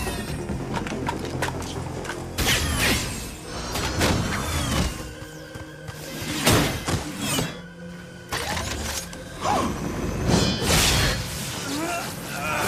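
Action-scene background music with cartoon fight sound effects laid over it: several sudden hits and whooshes, one every second or two.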